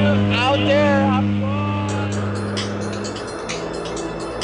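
Propeller jump plane's engine droning steadily inside the cabin, fading out about three seconds in. Music with a sharp, even beat takes over from about two seconds in.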